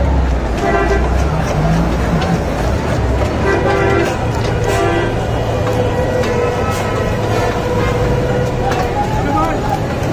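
Street traffic noise: vehicle horns sound several times, one held for a few seconds near the middle, over a steady low rumble.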